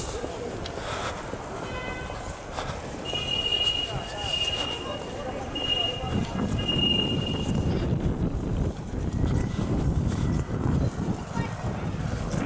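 City street sound: indistinct voices of passers-by over traffic noise, growing fuller from about halfway in. A high thin tone is heard in several short stretches from about three to eight seconds in.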